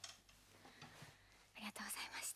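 Near silence with a few faint clicks, then a short, soft whisper or breath close to a microphone near the end.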